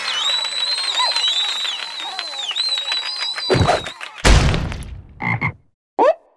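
Cartoon frog croaking loudly in a fast, rattling run for the first few seconds, then two heavy thuds a little after halfway, the second the loudest.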